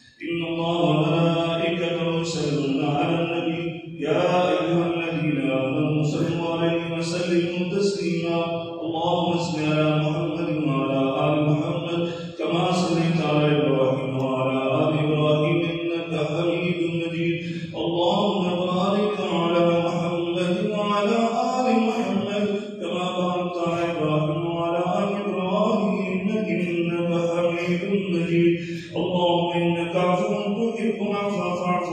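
The imam's voice in a melodic chanted recitation, with long held and gliding notes in phrases of several seconds each. Short pauses for breath come about five times.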